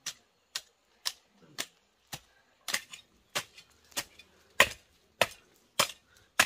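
Metal garden rake striking and breaking up dry, clumpy soil: a steady run of sharp, crunching strikes about twice a second.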